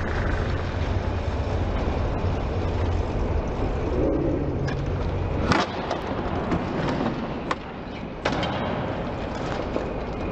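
Sport-bike engine running steadily. About five and a half seconds in it stops with a sharp crack, followed by a few knocks as the bike flips over onto its rider in a failed stoppie and lands on its side.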